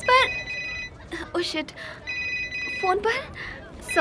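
A phone ringing with an electronic ringtone: a steady chord of high tones, sounding about a second at a time with a second's gap, twice, and starting again near the end.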